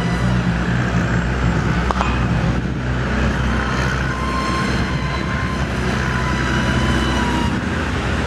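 Electric RC model airplane's motor and propeller whining in flight: a thin, high tone that shifts slightly in pitch, over a loud, steady low rumble.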